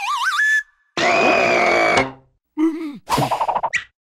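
Cartoon sound effects for a stretching tongue: a wavering whistle rising in pitch breaks off about half a second in. It is followed by a long, loud held cry and a few short vocal noises from the cartoon larva.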